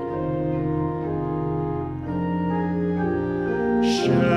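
Church organ playing sustained chords that change every second or so, with no voice over them. A singer comes back in right at the end.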